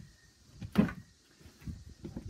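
A single short knock a little under a second in, then a few faint taps, as the hinged fold-out lid over the catamaran's helm is handled.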